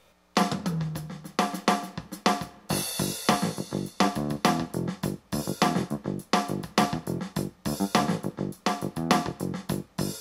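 Kawai ES8 digital piano's built-in rhythm section playing a drum-kit groove, with snare, hi-hat and bass drum over piano and bass notes, heard through the piano's own built-in amplifier and speakers. It starts about a third of a second in and stops just before the end.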